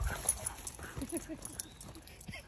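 Excited dogs at play, one giving a few short whines about a second in, over the scuffle of paws.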